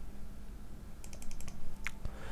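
Light clicks from a computer keyboard and mouse: a quick run of about seven small clicks about a second in, then one sharper click.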